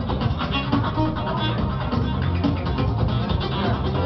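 Live dub/trip-hop band music: a guitar played over a heavy bass line and a steady electronic beat.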